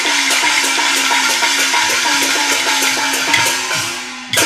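A Mianyang huagu opera band playing an instrumental passage between sung lines: a fast run of short repeated notes, about four a second, over percussion. It fades a little toward the end.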